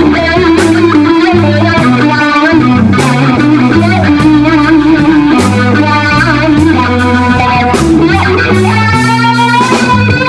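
Live blues band playing: a Stratocaster-style electric guitar takes the lead with bent, wavering notes over a stepping bass line and drums.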